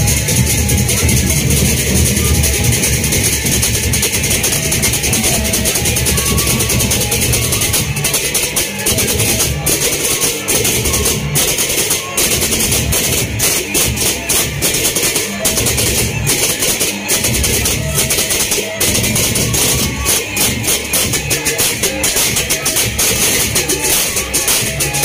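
Sasak gendang beleq ensemble from Lombok playing loud, dense, continuous music: hand cymbals clashing over large drums.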